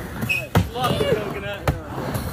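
Skateboard knocking on a mini ramp: a sharp knock about half a second in and another near the end, with a person's voice in between.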